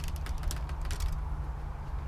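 uPVC back door being opened: a cluster of clicks and a creak from the handle and hinges in the first second, then fading, over a steady low rumble.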